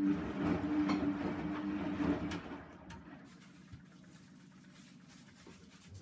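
Bendix 7148 front-loading washing machine running mid-wash: its motor starts suddenly with a steady hum and a rush of noise, loud for about two seconds, then settles to a quieter steady hum.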